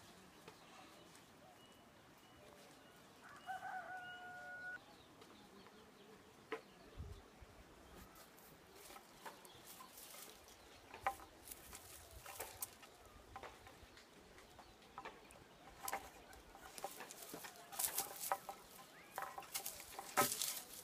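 A rooster crows once, a single held call about three seconds in. From about eight seconds on come scattered clicks and rustles of twigs and leaves, growing busier near the end.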